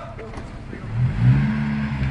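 A car engine revving up about a second in and then holding at a steady pitch.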